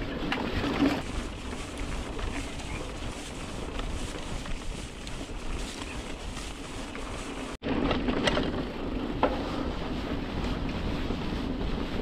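Wind rushing over the microphone of a riding mountain bike, over the rumble of its tyres rolling on a grassy dirt trail, with occasional clicks and knocks from the bike. The sound drops out for an instant about two-thirds of the way through, then carries on.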